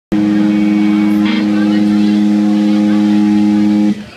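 A band's loud held chord, ringing steady and unchanging through the PA, then cut off abruptly just before the end.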